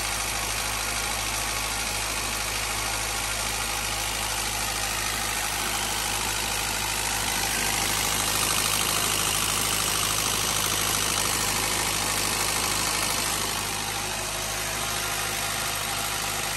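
Acura Integra GSR's B18C1 four-cylinder engine idling steadily just after start-up, getting a little louder in the middle as the microphone nears the exhaust headers.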